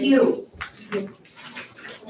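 Speech in a meeting room: a loud spoken word at the start, then quieter, broken-up talk.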